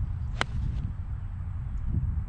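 A Ping Eye2 four iron striking a golf ball off the tee: one sharp click with a short ring about half a second in, over a steady low rumble.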